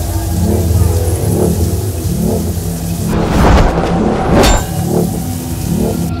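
Dramatic film soundtrack: a low droning, pulsing music bed, then two loud rushing swells about halfway through, the second cutting off with a sharp hit.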